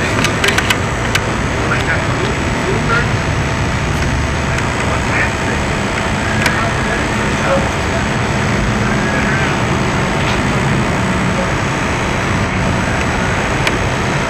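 Loud, even hiss and rumble on the audio track of an old Sony skip-field videotape, with faint distant voices and a few clicks near the start.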